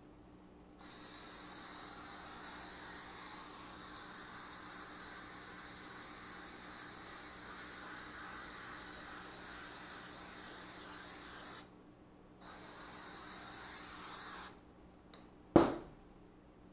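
Aerosol can of 3M Super 77 spray contact adhesive hissing onto the back of black speaker-box-style covering: one long spray of about ten seconds, a brief pause, then a second spray of about two seconds. Near the end, a single sharp knock as the can is set down on the table.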